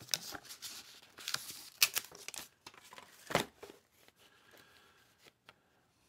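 Paper band torn off a stack of cardboard game boards, with papery rustling and a few sharp scraping strokes, then fainter handling of the boards after about four seconds.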